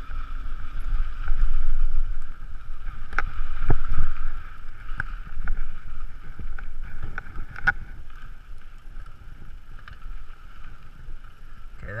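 Wind rushing over a handlebar-mounted action camera as a mountain bike rides a rough dirt trail, with scattered knocks and rattles from the bike over bumps. It is loudest in the first four seconds, then eases as the bike slows onto smoother ground.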